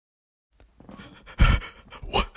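Heavy panting breaths that start about half a second in, after a brief total silence, with one louder breath about a second and a half in.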